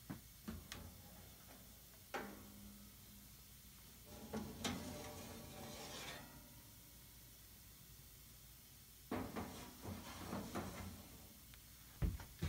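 Faint handling of a countertop powder coating oven: a sharp clunk about two seconds in as the door comes open, then the metal rack rubbing and scraping as it slides out. A few light knocks follow near the end as the rack is set down on the oven's top.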